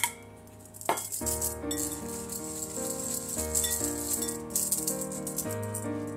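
Fine-mesh sieve shaken over a glass bowl, a fast dry rattle as powdered sugar is sifted through it, with a single knock about a second in, over background music.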